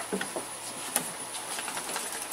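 Small clicks and knocks from hand work on a lawn mower's fuel line, with one sharp click about a second in. Under them runs the steady high drone of insects.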